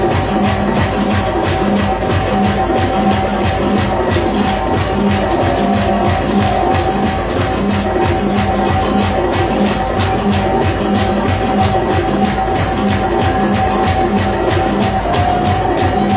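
Upbeat church worship music on keyboard and electric guitar with a steady beat. A congregation claps along in time.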